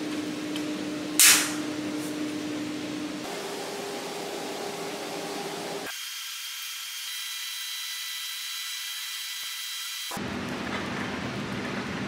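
A spring-loaded toggle latch on a steel drum-riser frame snapping shut with one sharp metallic snap about a second in, over a steady hum. The background hum changes abruptly a few times.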